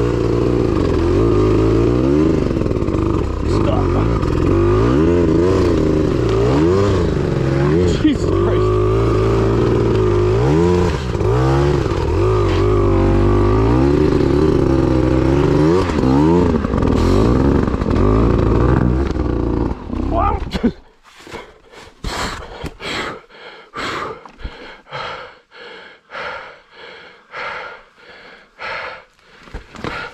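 Dirt bike engine revved up and down again and again under load, its rear wheel spinning for grip in mud. About twenty seconds in the engine cuts out abruptly, and a string of irregular sharp knocks and clatters follows.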